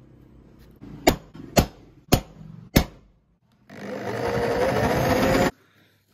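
Four sharp metallic knocks about half a second apart, then an electric drill runs for about two seconds, its pitch rising as it spins up, and cuts off suddenly: holes being made in a steel sheet.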